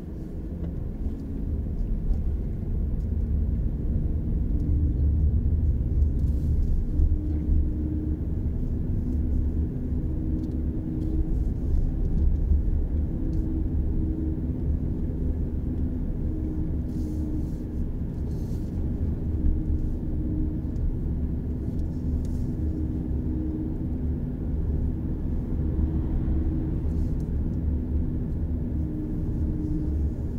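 Low, steady road and tyre rumble heard inside a moving car's cabin, with a faint hum that comes and goes.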